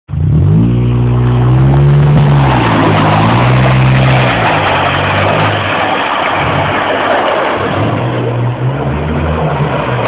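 2001 Honda Civic coupe EX's 1.7-litre four-cylinder engine revving, its pitch climbing and falling, fading mid-way and coming back near the end, under a loud steady rushing noise.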